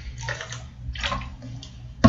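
A person drinking from a bottle: a few short gulps of liquid being swallowed.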